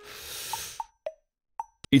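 A short whoosh sound effect that swells and fades in under a second, followed by a few short, soft plopping notes spaced apart, ahead of a voice starting near the end.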